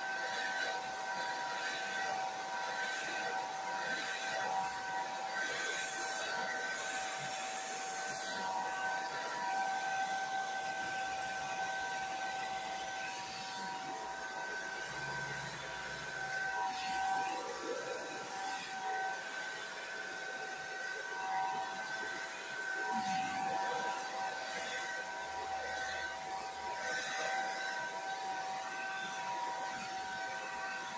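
Handheld hair dryer running steadily: a whine made of several held tones over the hiss of blowing air, with small rises and dips in level.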